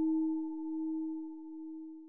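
A single bell-like tone, the last note of the closing music, ringing on with a slow waver in loudness and dying away near the end.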